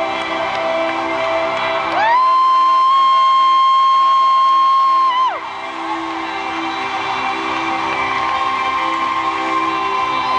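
Live pop ballad recorded from the arena floor. About two seconds in, a single high voice slides up onto a long held note and sustains it for about three seconds, much louder than the band, before dropping away.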